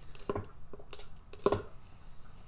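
A ballpoint pen cap pressed into encaustic wax paint on a board, stamping small circle marks with the hole in its top: about three short taps, the loudest about a second and a half in.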